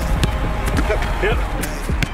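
Football passing drill: several sharp thuds of the ball being struck and received, short shouted calls between them, over background music.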